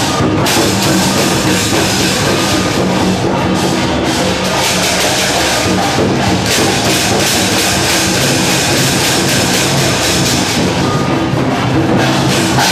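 Loud percussion music with drums, beaten in close strokes without a break.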